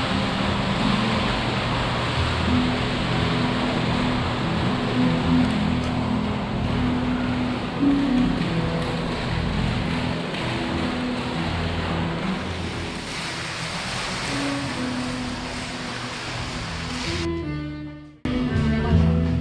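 An indoor water fountain splashing steadily, a continuous rushing hiss, under background music with slow held notes. The water sound fades and cuts off near the end.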